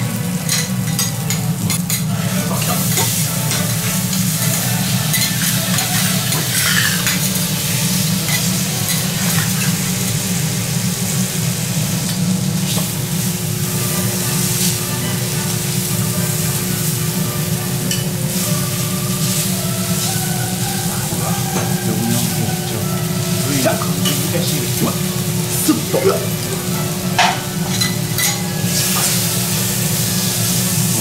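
Thick beef steaks sizzling steadily on a hot teppanyaki iron griddle. A few sharp clicks of a metal spatula and knife against the plate come near the end.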